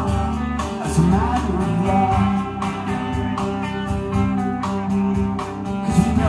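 Live rock band playing, with guitar to the fore over a steady low accompaniment.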